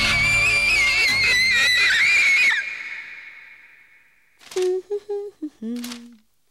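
A woman's long, high-pitched scream, wavering in pitch, held for about two and a half seconds over loud film background music; both stop together and fade out. Near the end come a few short, low voice sounds.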